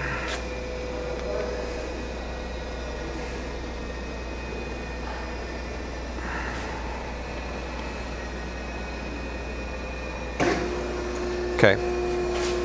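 Okamoto ACC-1632DX surface grinder running with a steady hum. About ten seconds in there is a click, then a new steady tone comes in as the hydraulic system is started again.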